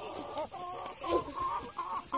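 Domestic hens clucking: a string of short calls starting about half a second in.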